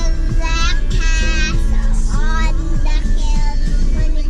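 A young child singing along to a pop song with a steady beat playing on a car stereo, heard inside the car with a steady low hum underneath.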